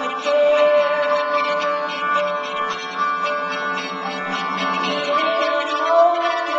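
Live band playing an instrumental passage, with upright double bass and drums, heard as long held notes. Recorded from the audience on a small handheld camera.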